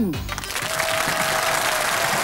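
Studio audience applauding, starting about half a second in, over a single held note of the theme music; a short melodic phrase fades out just as the clapping begins.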